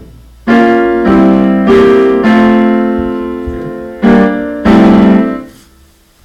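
Grand piano chords struck in a short run: four chords in quick succession, a pause, then two more, the last one ringing out and fading near the end.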